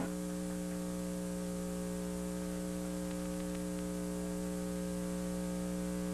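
Steady electrical mains hum: a low buzz made of several even, unchanging tones.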